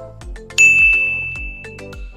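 Upbeat background music with a steady beat. About half a second in, a single loud bell-like ding cuts in on one high pitch and slowly fades over the next second and a half. The ding is an edited-in sound effect.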